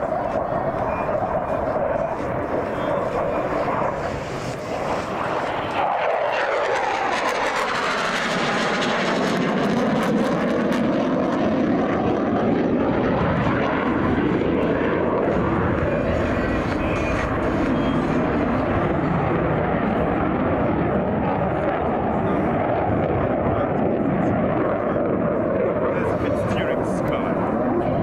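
Turkish Air Force F-16 fighter's F110 turbofan, loud and continuous jet noise as it flies an aerobatic display. About six seconds in the noise swells and takes on a sweeping, phasing whoosh as the jet passes, then stays loud and steady.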